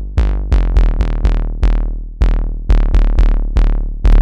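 A piano house loop playing: syncopated piano chord stabs, each with a sharp attack and a quick decay, over a drawn-out synth bass.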